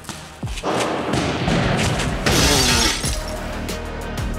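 Glass shattering loudly for under a second, a little past two seconds in, over background music, after a thud about half a second in.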